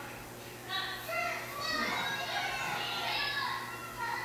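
Young children's voices reciting and chanting together with a teacher, several voices overlapping, heard as played back from a first-grade classroom video.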